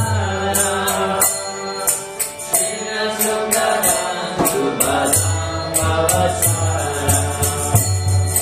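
Devotional mantra chanting sung to a melody, with small hand cymbals striking a steady beat.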